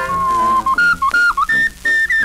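An instrumental break from a 78 rpm record playing on a turntable: a high, whistle-like lead melody of held notes, with a few short slides between them, over band accompaniment.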